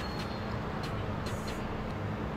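Steady background rumble and hiss with a low hum, with no distinct event.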